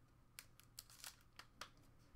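Faint, quick clicks and rustles, about six in under two seconds, of trading cards and plastic card holders being handled on a desk.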